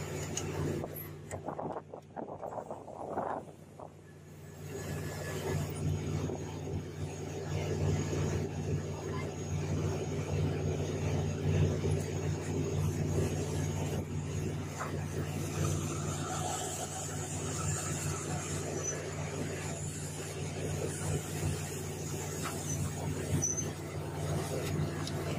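A fishing vessel's engine and deck machinery running with a steady low hum over a wash of wind and sea noise, dropping quieter for a couple of seconds about two seconds in.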